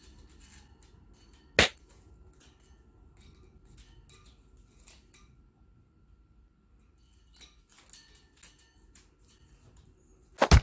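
An African grey parrot moving about its wire cage: faint scattered clicks and taps of beak and claws on the bars, with one sharp, loud knock about a second and a half in.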